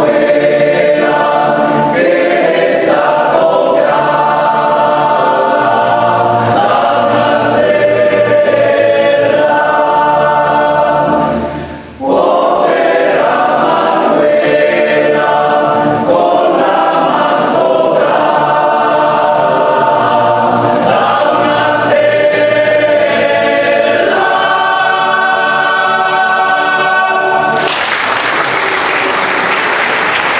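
Men's choir singing in several parts, with a brief break about twelve seconds in before the voices come back. The song ends near the end and applause starts.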